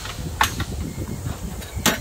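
Two sharp knocks about a second and a half apart as the radiator cooling fan assembly is worked up and pushed back in the engine bay.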